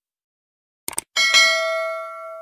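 Two quick clicks, then a bright bell ding that is struck, struck again and rings on, fading slowly. These are the click-and-notification-bell sound effects of a subscribe-button animation.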